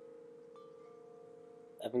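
Soft background music of sustained, chime-like ringing notes, with a higher note joining about half a second in and another a little later.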